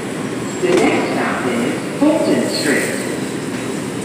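Steady hum and hiss of an R142 subway train standing at a station platform, with voices heard over it twice.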